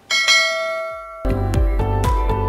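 A single bell-like notification chime sound effect rings out and fades away. About a second in, outro music starts with deep bass notes.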